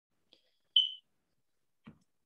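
A single short, high-pitched electronic beep about a second in, dying away within a quarter second.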